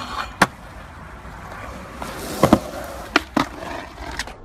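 Skateboard on concrete: a series of sharp wooden clacks as the board pops and lands, a couple of them close together about two and a half seconds in, with the wheels rolling over the concrete between them.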